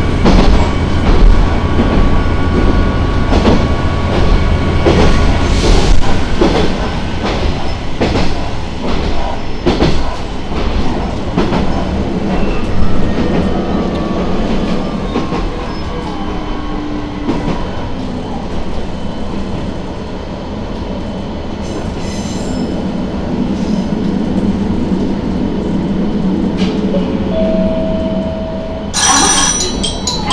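Diesel railcar heard from the cab on jointed track: the engine hums under power for the first few seconds, then the railcar coasts with rail-joint clicks and faint wheel squeal as it slows on the approach to a station. A bright chime starts up near the end.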